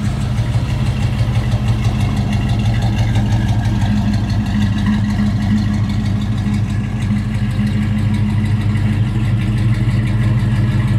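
A 1967 Chevelle's 396 big-block V8 idling steadily, with an even, rapid exhaust pulse.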